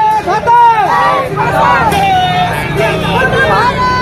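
A crowd of protesters shouting at close range, many voices overlapping, with a car engine running close by underneath.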